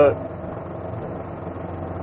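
Cab interior noise of an Aixam Mega Multitruck on the move: its Kubota two-cylinder diesel running steadily under tyre and road noise.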